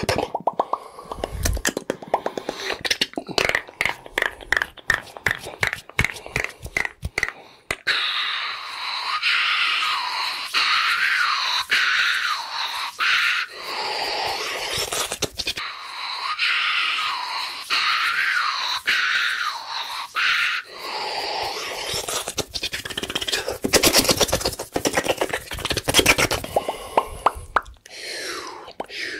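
Fast close-miked ASMR hand and mouth sounds. The opening stretch is rapid runs of sharp clicks and snaps. Two long stretches of hissing, rubbing noise fill the middle, and the ending returns to quick clicks.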